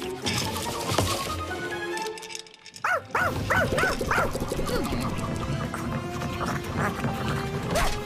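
Cartoon background music, then about three seconds in a quick run of about six high dog yelps, each rising and falling in pitch, from an animated pug.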